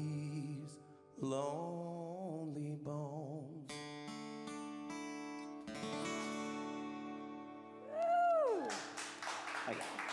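Two acoustic guitars close a live country song: a last wavering melody line over the strumming, then a final chord that rings out for about four seconds. Near the end a voice whoops and a few hands clap.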